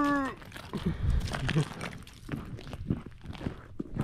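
A held voice tails off in the first moment, then scattered light crunches and knocks of boots walking on the ice.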